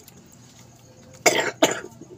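A woman coughing twice in quick succession, about a second in. She is choking on a mouthful of steamed sweet potato.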